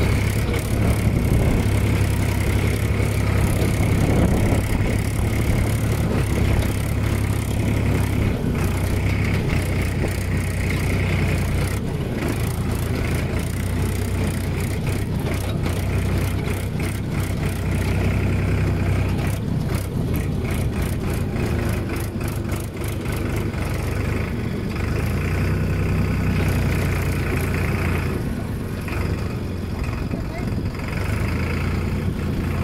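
Farm tractor's diesel engine running steadily under a driver's hands while it is driven across a field, heard close up from the seat, its pitch and level shifting a little a few times.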